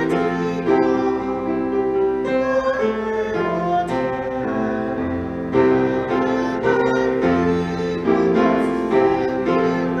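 A hymn played on piano, with a woman singing along in held notes that change every second or so.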